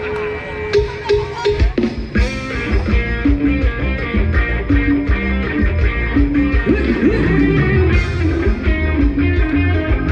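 Live band playing Thai ramwong dance music, with a steady beat that kicks in about two seconds in.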